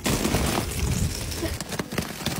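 A thin shell of ice glazing patio cushions cracking and crunching as a hand presses into it: a dense run of small snaps and crackles.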